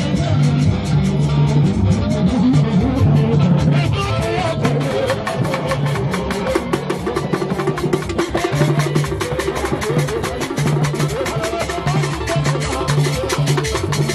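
Live traditional band music: hand-beaten wooden drums and a fast, steady run of wood-block-like percussion over a repeating keyboard bass line, the percussion growing denser about four seconds in.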